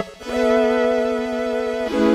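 Intro music: sustained keyboard chords over a fast steady pulse, with one chord held for about a second and a half.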